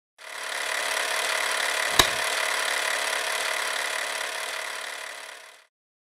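Logo intro sound effect: a steady hiss that fades in, with one sharp hit about two seconds in, then fades out shortly before the end.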